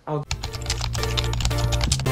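Rapid computer-keyboard typing clicks over music that comes in with a steady low bass note about a third of a second in.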